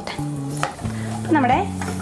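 Cashew nuts sizzling as they fry in ghee in a coated frying pan, stirred and scraped with a slotted spoon, being cooked to a brown shade.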